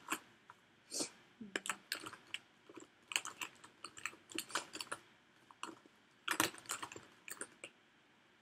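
Irregular light clicks and taps of small objects being handled on a tabletop, with a denser flurry of clicks a little past the middle.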